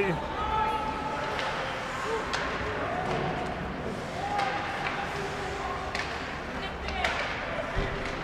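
Ice hockey rink ambience: indistinct voices and calls echoing around the arena, with a few sharp knocks of hockey sticks and puck, one about two seconds in and two more near the end.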